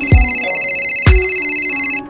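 Electronic telephone ringtone, a steady high ringing held for about two seconds and cut off sharply, over background music with two heavy beats a second apart.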